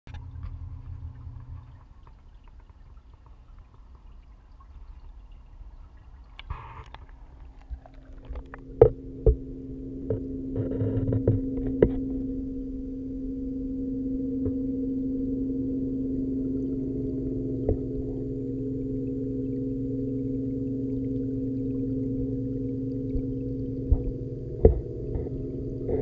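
Steady electric hum of a reef aquarium's pumps, heard with the camera submerged in the tank water. The hum swells up about a third of the way in as the camera goes under. A few sharp knocks stand out over it.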